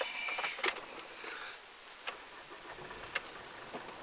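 A few sharp clicks and light rattles inside a stationary car, spaced irregularly over a faint background.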